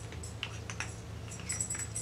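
Faint small clicks and light rattles of small objects being handled, coming in two clusters, about half a second in and again near the end, over a steady low hum.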